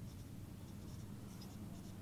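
Marker pen writing on a whiteboard: a few faint, short scratchy strokes as letters are written.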